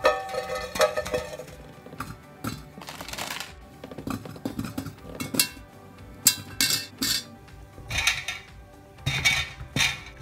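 Small plastic toy figures dropped one after another into a metal tin can, each landing as a short clink or clatter against the tin, about a dozen strikes spread irregularly through the stretch.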